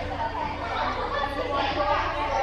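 Many cheerleaders' voices chattering at once, indistinct and overlapping, in a large echoing gym, over a steady low hum.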